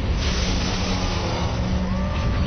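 Action-film sound effects: a loud, steady roar of an explosion and vehicle noise, with a low steady hum underneath.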